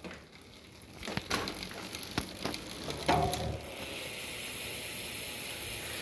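Novatec D792SB rear hub freewheeling with the wheel turning on a bike stand: a few handling clicks, then about halfway in a soft, even, fast buzz of the freehub pawls sets in. The buzz is muted, which the owner puts down to the heavy grease packed inside the freehub body.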